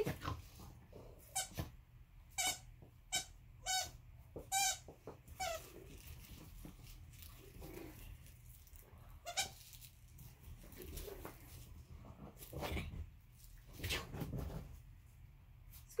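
A squeaky green plush dog toy squeaking as a small dog bites and tugs it: a run of short squeaks in the first five seconds, then a few scattered ones.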